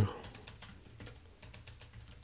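Computer keyboard being typed on: a light, irregular run of keystroke clicks as a command is entered at a terminal.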